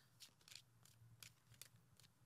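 Faint soft flicks and taps of a tarot deck being shuffled by hand, a handful of light card sounds over near silence.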